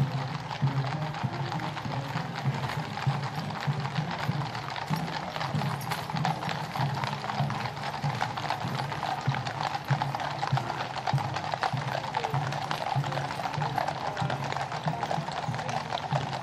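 Many cavalry horses walking in column on a paved road: a dense, overlapping clip-clop of shod hooves, with music playing underneath.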